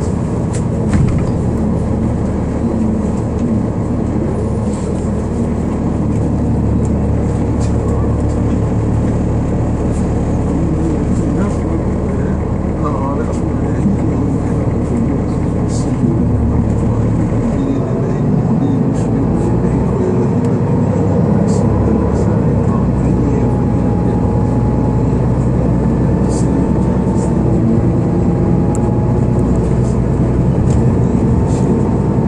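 Inside a 2012 Gillig Low Floor 40-foot transit bus under way: the engine and drivetrain give a steady low drone, with a whine that climbs in pitch over the last dozen seconds as the bus gathers speed.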